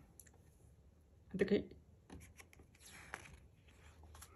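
A page of a hardcover photo book being turned by hand: soft paper rubbing and sliding with a few light ticks, starting about halfway through. A brief voice sound comes just before it.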